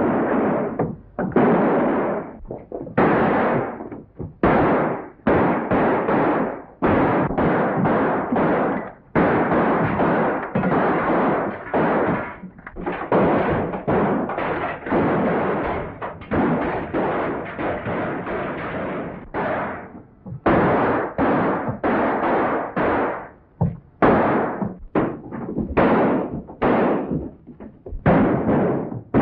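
Gunfight: a rapid, irregular string of loud gunshots, dozens of sharp reports, some in quick clusters, each with a short echoing tail.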